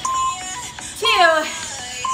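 Background music with short, steady electronic beeps about once a second, typical of an interval timer counting down the last seconds of a Tabata work interval, and a woman's voice calling out the count.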